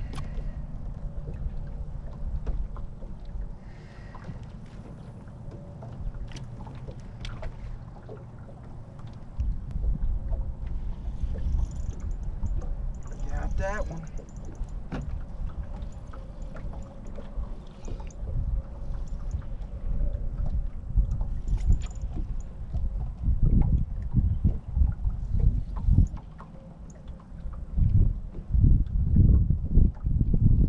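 Wind rumbling on the microphone and small waves lapping against a bass boat, in gusts that grow stronger about a third of the way in and again near the end, with a faint steady hum underneath.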